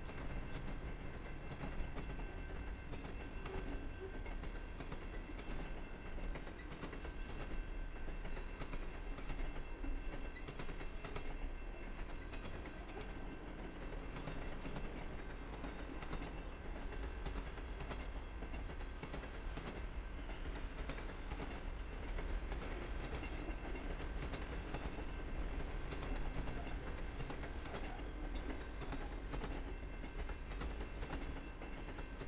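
Freight train cars, including a string of CP Rail camp cars, rolling past at steady speed: a continuous low rumble of steel wheels on rail with a constant patter of clicks.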